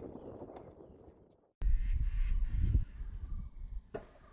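Outdoor tennis-court ambience with a loud low rumble of wind on the microphone lasting about a second, starting abruptly at a cut, then a sharp knock near the end.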